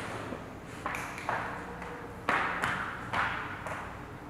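A string of sharp, ringing hits about half a second to a second apart, over faint steady low tones. It is the music video's soundtrack playing quietly under the reaction.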